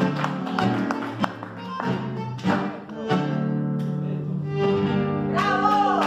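Tango instrumental ending on guitar and bandoneon: held bandoneon chords over plucked and strummed guitar, changing chord a few times.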